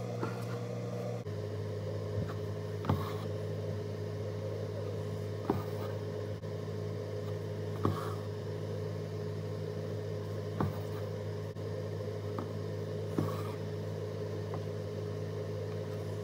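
Soft, sharp ticks every two to three seconds as an embroidery needle punches through fabric stretched taut in a hoop and the thread is drawn through, over a steady low hum.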